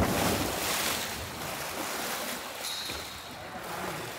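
Loud rush of churning, splashing pool water, starting abruptly and easing off gradually over a few seconds.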